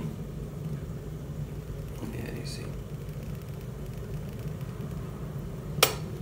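Dualit Lite electric kettle heating descaling solution close to the boil, with a steady low rumble. A sharp click comes near the end as the kettle switches off.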